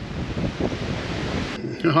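Strong wind blowing across the microphone, a steady rushing noise with a low rumble. It cuts off suddenly near the end, where a man starts speaking.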